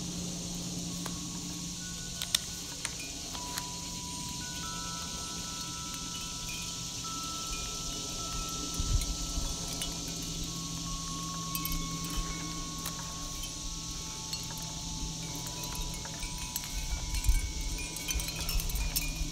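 Chime notes ring out one after another, each held for several seconds, over the sound of thick journal pages being turned and handled. There are a few light clicks, and soft bumps come about halfway through and again near the end.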